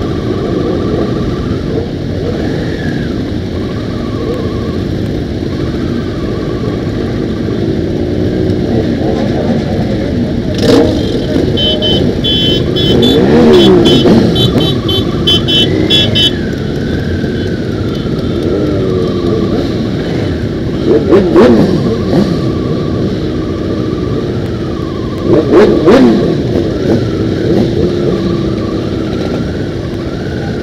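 Many motorcycle engines running together at idle, with several sharp revs rising and falling in pitch around the middle and again near the end as bikes pull away.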